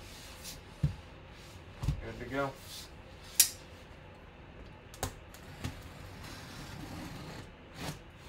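Scattered knocks and clicks from handling a cardboard box and a knife before the tape is cut, the sharpest click about three and a half seconds in. A brief hummed vocal sound comes about two seconds in.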